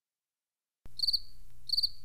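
Silence, then about a second in a cricket chirping: two short trills of rapid pulses, over a low steady hum.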